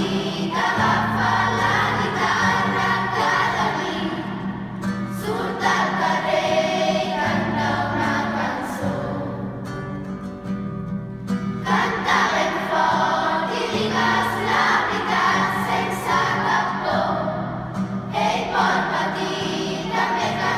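A children's choir singing in phrases over low held notes of accompaniment, with short breaks between the phrases.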